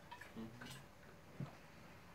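Faint handling sounds of a glass water bottle: a few soft clicks while drinking, then a short low knock about one and a half seconds in as the bottle is set down on the table.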